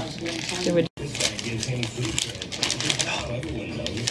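Gift wrapping paper crinkling and tearing as a present is unwrapped, with soft voices talking underneath. The sound cuts out completely for a moment about a second in.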